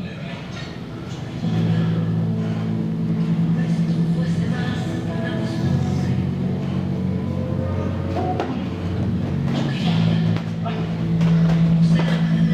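A steady low engine hum that sets in about a second and a half in and shifts pitch a couple of times.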